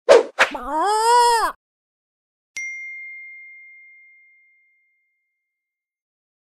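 Logo sting: two quick sharp hits, then a short crow-like call whose pitch rises and falls. A single high bell-like ding follows about two and a half seconds in and rings out over about two seconds.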